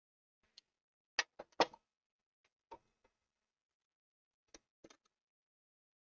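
A few short, sharp clicks and light knocks from handling small electronic parts and tools on a workbench: a quick cluster about a second in, a single one a little later, and a pair near the end, with dead silence between.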